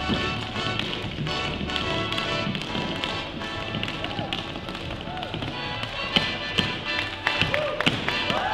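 Tap shoes striking a hard wooden dance floor in quick, rhythmic runs of sharp taps during a tap-dance routine, over music.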